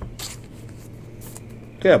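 Soft scraping and rustling as a trading card is handled and slid into a clear plastic sleeve, with a short brushing sound at the start and faint rustles after it. A man's "yeah" comes near the end.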